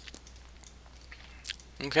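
A few scattered, sharp clicks of a computer mouse and keyboard being worked, over a low steady hum.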